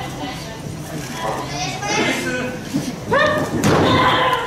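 A wrestler's body hits the ring mat with a thud about three seconds in. Spectators shout and call throughout, with a loud yell just after the impact.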